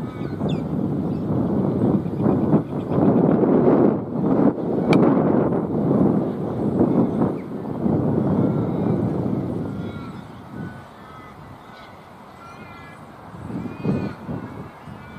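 Gusty wind rumbling on an outdoor microphone, easing off about ten seconds in, with short bird calls scattered throughout.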